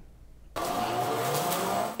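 Electric zero-turn riding mower running: a steady whine from its electric drive motors, rising slightly in pitch, over a hiss. It starts suddenly about half a second in.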